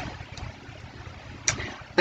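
Steady low background rumble with a faint hiss, and one short sharp click about a second and a half in.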